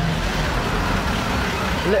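A road vehicle's engine running close by, a steady low rumble over street noise.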